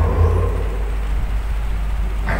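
A steady low rumble with no speech, with a faint trace of sound in the first half second that fades away.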